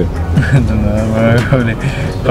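Men's voices in casual conversation, mixed with laughter, one voice holding a steady pitch for about a second mid-way.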